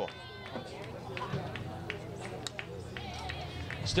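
Faint background voices at a softball field, with a few light clicks over a steady low hum.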